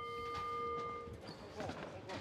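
Boxing ring bell ringing out, its tones fading away over the first second or so, over faint arena background noise.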